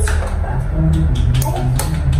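A metal spoon tapping an eggshell a few times in quick succession, trying to crack an egg that won't break, over background music.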